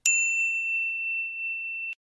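A single notification-bell ding sound effect: one clear, high tone that sounds suddenly and holds for nearly two seconds, its brighter overtones dying away within the first half-second, then cuts off abruptly.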